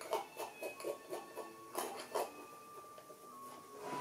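Palette knife dabbing and scraping oil paint onto a canvas: a run of short strokes, about three a second, ending with two stronger ones about two seconds in.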